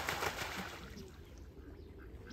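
A duck splashing in pond water, the splashing fading out about a second in.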